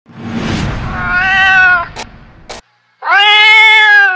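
A cat meowing twice: a first call about a second in over a rushing noise, then a louder, steadier meow near the end. Two sharp clicks fall between the calls.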